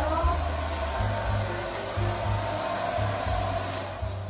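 Hair dryer blowing steadily, switched off just before the end, over background music.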